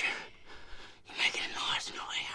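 Breathy, whispery human sounds in two bursts, the second starting about a second in.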